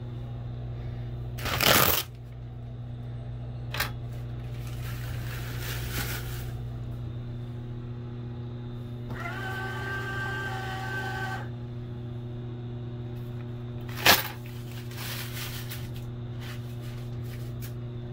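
Georgia-Pacific enMotion touchless paper towel dispenser: its motor whirs for about two seconds as it feeds out a towel, near the middle. A paper towel is torn off with a sharp rip about a second and a half in, and again about three-quarters of the way through; these rips are the loudest sounds.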